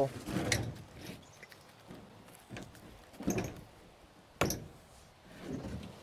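Douglas fir rounds scraping and knocking in a pickup bed as one is pulled out and set down: a few dull thuds and scuffs, the sharpest knock about four and a half seconds in.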